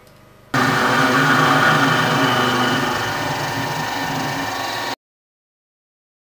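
Sieg X4 Plus CNC milling machine running with its spindle turning, a loud steady machine sound that starts abruptly about half a second in and cuts off suddenly near the five-second mark.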